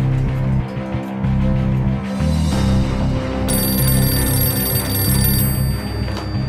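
Background film music throughout; about three and a half seconds in, an office desk telephone rings with a steady high electronic tone for about two seconds, then stops as the receiver is lifted.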